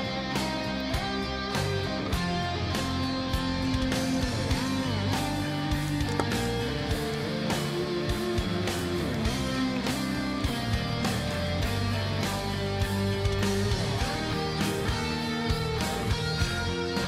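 Electric guitar solo in a symphonic metal song, simple and uncomplicated, played over the band's steady drum beat and bass.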